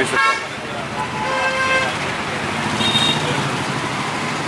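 A vehicle horn honks once, about a second in, a steady held tone lasting just under a second, over continuous street traffic noise.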